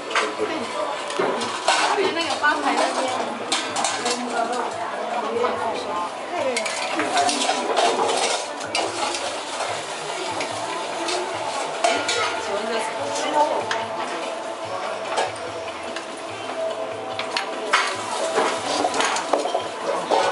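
Metal ladles, tongs and bowls clinking and knocking against the pot as ingredients and red-hot serpentine stones go into a stone hotpot, with the broth boiling hard and steaming. Many sharp clinks over a steady bubbling hiss.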